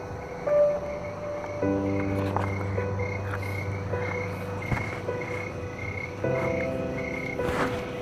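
Soft background music of slow held chords, over a night ambience with a high chirp repeating about twice a second.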